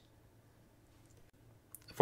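Near silence with faint room tone, and one faint short click near the end.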